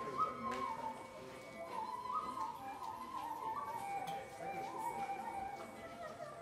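Carnatic music for a Bharatanatyam jatiswaram in raga Kalyani: a melody moving in steps between held notes over a steady drone.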